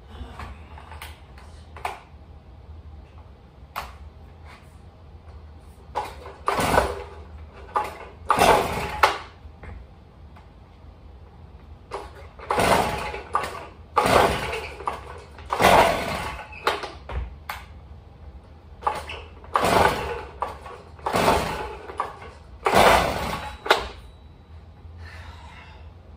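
Stihl two-stroke cutoff saw being pull-started by its recoil starter cord, about ten hard pulls in quick clusters from about a quarter of the way in, the engine never catching. The saw, left out in the rain with water in its fuel and a wet air filter, will not start.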